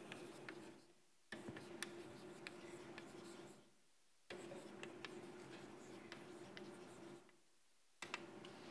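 Chalk writing on a blackboard: faint scratching and sharp little taps of the chalk in three stretches with short pauses between, over a steady low hum.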